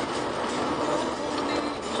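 Steady road and tyre noise inside the cabin of a moving Vauxhall Corsa driving on a wet road.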